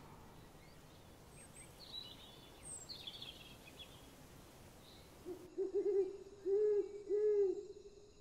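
An owl hooting: a run of about five low, arched hoots in the last two and a half seconds. Before them come a few faint high bird chirps, about two to three seconds in.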